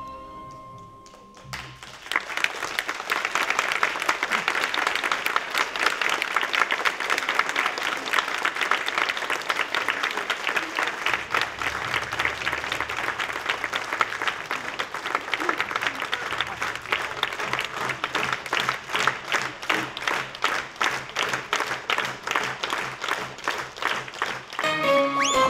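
An audience applauding in a hall, breaking out about a second and a half in as the last notes of the music die away, and falling into rhythmic clapping in unison near the end.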